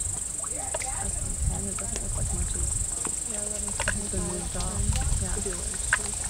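Soft, unclear talk among a few people, mostly in the second half, over a steady high-pitched insect drone and a low rumble.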